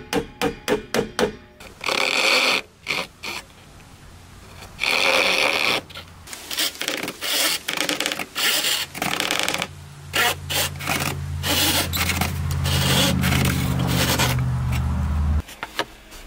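A small hammer tapping quickly and lightly into wood for the first second or so, then a hand saw cutting thin wooden strips in long strokes, followed by quicker, shorter strokes. A low steady hum runs under the later sawing and cuts off suddenly near the end.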